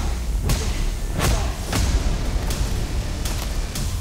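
Trailer sound design for a fight montage: a string of sharp hits and thuds, about six in four seconds, over a steady deep music rumble.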